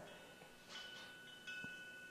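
Faint high chime tones, struck about twice and left ringing.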